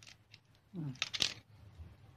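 Thai basil stems being snipped with a hand cutting tool: a short cluster of sharp, crisp clicks a little past halfway, just after a brief murmur from a woman's voice.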